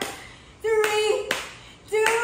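Hands clapping sharply in a steady beat, about one clap every 0.7 s, keeping time for scissor-leg reps, with a woman's short voiced calls landing on the claps.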